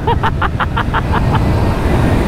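Heavy wind rush and road roar on the microphone of an electric scooter running at about 115 km/h. In the first second and a half there is a quick run of about eight short, high-pitched pulses that fade out.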